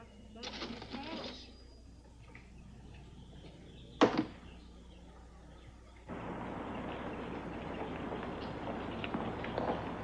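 A single sharp knock with a short ring about four seconds in. From about six seconds, steady street traffic noise.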